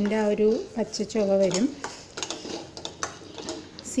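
A metal spoon stirring and scraping thick chilli masala around a stainless steel kadai, with irregular small clicks and scrapes of metal on metal, most plainly in the second half.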